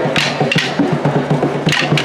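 Wooden sticks clacking together in rhythm over a drum beat.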